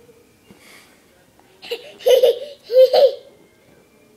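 A toddler laughing: a short burst followed by two louder peals about halfway through.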